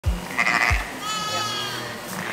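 A sheep bleats once, a single long call lasting most of a second, over background music with a deep beat.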